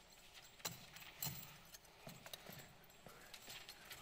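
Faint footsteps and knocks of cowboy boots on a stage floor as an actor gets up and moves: a few irregular steps, the two loudest within the first second and a half.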